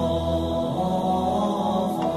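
Buddhist devotional chanting set to calm instrumental music, sung in long held notes over a low drone.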